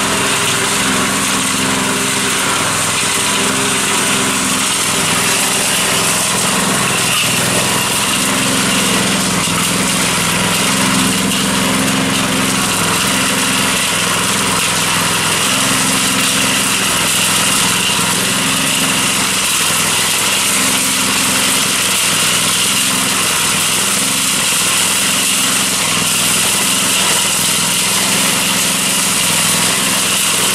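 Small gasoline engine of a portable cement mixer running steadily, turning the drum as it mixes a batch of concrete.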